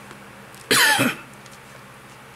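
A man coughing once into his fist, a short loud cough about two-thirds of a second in.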